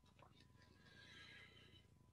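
Near silence in a pause between sentences, with only a very faint, brief pitched sound about a second in.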